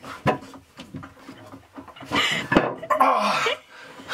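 A man groaning, straining and laughing as he squeezes through a tight hatch, with a sharp knock near the start and a longer strained groan in the second half.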